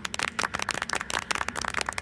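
Rapid, irregular crackling clicks, a cartoon sound effect.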